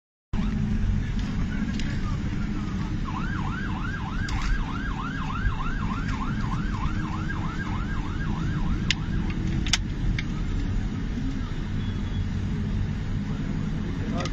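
An emergency vehicle's siren in a fast yelp, about three rising-and-falling sweeps a second, starting a few seconds in and stopping after about six seconds. Under it runs a steady low rumble, with a few sharp clicks near the end of the siren.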